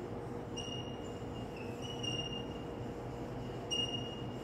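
Whiteboard marker squeaking across the board as words are written, in several short high-pitched squeaks of under a second each, over a faint steady hum.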